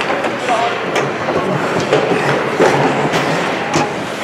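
Ice hockey arena ambience: a steady noisy background in the rink with indistinct voices echoing and a few short, sharp knocks.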